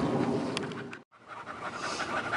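A bully-breed dog panting steadily with quick open-mouthed breaths. The sound drops out briefly about halfway through, then the panting carries on.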